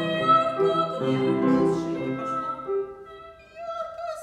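A 12-year-old boy singing a classical vocal piece in held, vibrato-laden notes, accompanied on a grand piano. The piano chords and the phrase die away about three seconds in.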